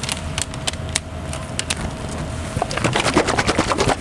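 Light clicks and knocks of a plastic measuring cup and metal cans being handled on a workbench, over a steady low hum. About three seconds in they turn into a quick run of rapid clicking.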